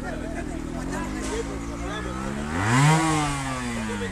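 A trials motorcycle's single-cylinder engine running at low revs, then one throttle blip about two and a half seconds in that rises in pitch and falls back.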